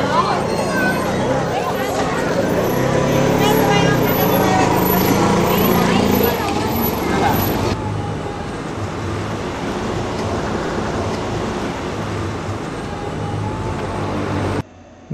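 Busy town street: many people talking and vehicles passing. About halfway through it cuts off suddenly to a quieter, steady outdoor noise.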